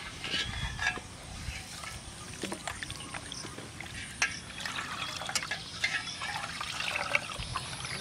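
Broken rice being washed by hand in a steel bowl of water: water sloshing and trickling as the grains are swirled, with scattered light clicks against the metal.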